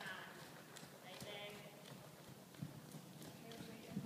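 Hoofbeats of a cantering horse on soft indoor arena footing, heard as scattered soft, faint thuds.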